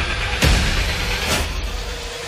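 Soundtrack music with two sudden swishing transition effects about a second apart.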